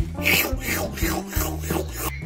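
Rapid rasping rub strokes, about five a second, close to the microphone, like a plush toy's fabric rubbing against the phone as it is handled. A low steady bass note runs underneath.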